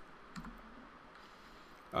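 Near silence between narration: faint room tone with a single short click about a third of a second in.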